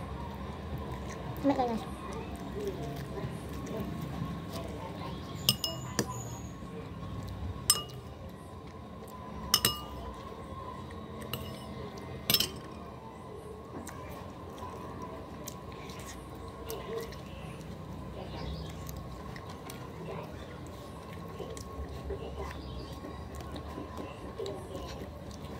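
Eating by hand from a ceramic plate: about half a dozen sharp, ringing clinks of hard objects against the plate, spaced irregularly and mostly in the first half, over quiet eating sounds.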